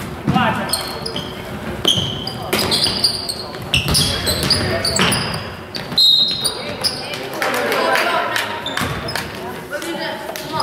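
Basketball bouncing on a hardwood gym floor, with repeated sharp knocks, while players and spectators shout. The sounds echo in the large gym.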